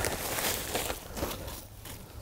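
Seed raising mix poured from a plastic bag into a plastic pot: a gritty, crackling pour with the bag crinkling, fading out over the first second and a half.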